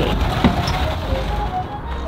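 A low, steady mechanical hum with a single sharp click about half a second in; no music is playing.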